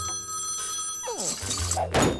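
Cartoon telephone ringing, steady and high, cutting off about a second in as the antique candlestick phone is picked up. A sound effect gliding down in pitch follows, under background music.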